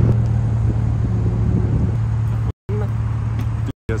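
Car engine idling with a steady low hum, cut off briefly twice near the end.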